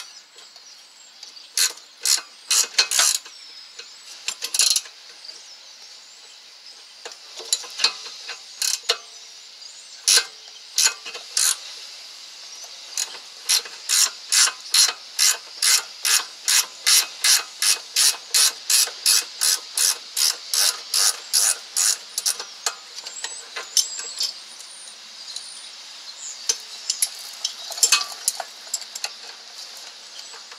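Hand ratchet wrench clicking as it turns a rear brake caliper bolt: scattered sharp clicks at first, then a steady run of about three clicks a second through the middle, thinning out again near the end.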